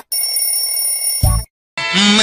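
Notification bell chime sound effect from a subscribe-button animation: a bright, steady ring lasting about a second and a half, with a short low thump near its end. After a brief gap, the song's music starts with a low held note just before the end.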